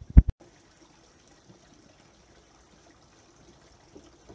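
Two sharp knocks about a quarter second in, then a faint, steady trickle of spring water.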